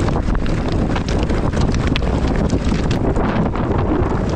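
Mountain bike rolling fast over a rough stone and gravel track, its tyres and frame rattling with a constant patter of small knocks, under heavy wind buffeting on the action-camera microphone.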